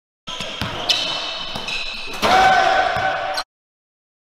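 Basketball dribbled on a hardwood gym court, with several sharp strikes and high squeaks. A louder held tone comes in about two seconds in, and the sound cuts off suddenly.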